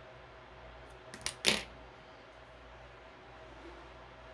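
Small scissors snipping through cotton crochet cord once: a sharp snip about a second and a half in, with a faint click just before it.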